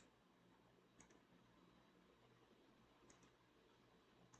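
Near silence broken by two faint computer mouse clicks, one about a second in and one about three seconds in.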